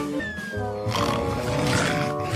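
Cartoon background music with a pulsing bass, a short falling whistle just after the start, then from about a second in a loud, rough animal vocal sound from a cartoon bulldog.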